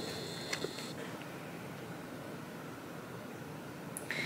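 Quiet indoor room tone: a steady soft hiss, with a faint high whine that stops about a second in and a small click just before it.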